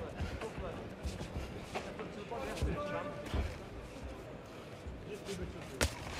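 Arena crowd noise with faint distant voices and low thuds from the boxers moving in the ring. Near the end comes a single sharp smack as a left hook lands partly through the guard.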